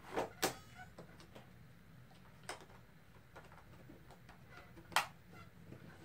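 A few sharp clicks and light knocks as a Panasonic Toughbook CF-53 laptop is handled on a table: two close together at the very start, one about two and a half seconds in, and one near the end, with little else between.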